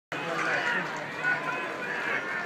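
Football crowd: many spectators' voices calling and chattering at once, in a steady wash of sound.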